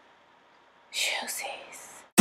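Near silence, then about a second in a short whispered word in a few breathy syllables with hissing consonants.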